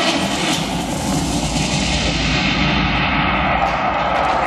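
A loud, rumbling whoosh sound effect in the fitness routine's backing track, like a passing jet, its high hiss darkening steadily as it goes.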